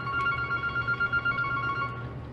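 Telephone ringing: an electronic ring of two steady high tones sounded together, wavering quickly in loudness, which stops near the end.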